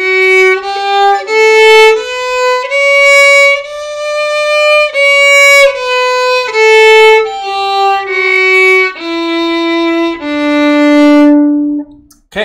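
Stefan Petrov Workshop model violin bowed slowly through a one-octave D major scale, one note at a time: the notes step up to the high D, hold it, then step back down and end on a long low D near the end.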